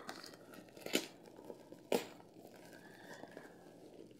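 White paper wrapping being torn open and crinkled by hand, with two sharp rips about a second apart and soft rustling in between.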